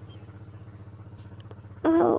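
A low steady hum with a fast, even flutter. Near the end a voice starts a long held 'aah'.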